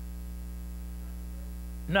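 Steady low electrical mains hum, with nothing else over it until a spoken word starts at the very end.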